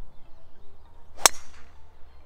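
Driver striking a golf ball off the tee: a single sharp crack a little over a second in, with a short ring after it. The golfer calls it a lovely strike.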